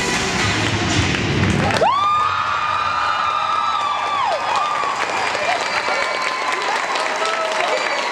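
Show music ends about two seconds in, giving way to an arena crowd cheering and applauding. A long high cheer rises and is held for about two seconds, with scattered shouts over the clapping after it.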